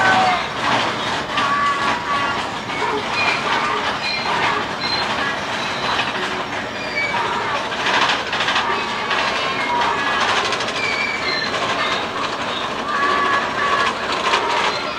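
Big Thunder Mountain mine-train roller coaster running on its track: a steady rattle and clatter of the cars and wheels, with short high squeaks scattered through it.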